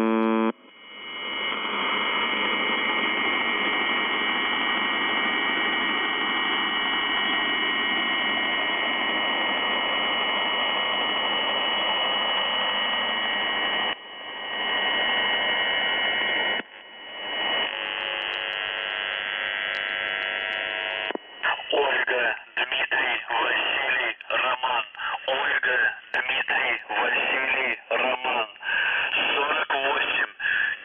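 The UVB-76 'Buzzer' shortwave station on 4625 kHz, heard through a receiver: the buzz tone cuts off about half a second in. Steady static hiss with faint steady tones follows for about twenty seconds. From about 21 s a voice reads a coded message in Russian over the noisy radio channel.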